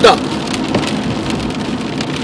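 Rain falling on a car's roof and windows, heard from inside the cabin as a steady, even wash of noise.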